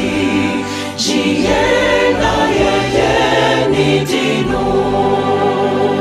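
A male-voice choir singing a gospel hymn in Twi, holding sustained chords.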